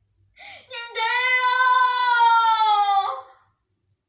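A woman's voice lets out one long, high, wailing cry, held on nearly one pitch for about two seconds. It dips slightly at the end and breaks off. A short sharp intake of breath comes just before it.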